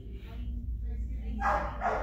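A dog barking once, a short loud bark about one and a half seconds in, over a low steady room hum.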